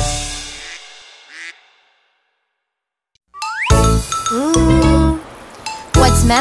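The last chord of a children's song rings out and fades to silence. After a pause of over a second, a rising swoosh and a run of short cartoon animal calls with sliding pitch begin.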